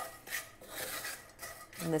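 Wooden spatula scraping and stirring pumpkin seeds around a skillet, with a few short scrapes at the start and then quieter stirring.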